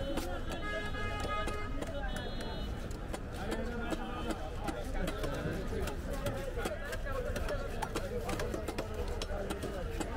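Crowd chatter at a busy street fish market with repeated sharp knocks of fish being chopped with cleavers on wooden blocks. A brief high-pitched tone sounds about a second in.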